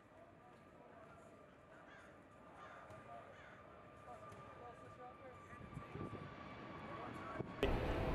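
Faint outdoor background of distant voices with a faint steady hum, and a low rumble that builds over the last few seconds. The background changes abruptly about seven and a half seconds in, at a cut to a louder recording.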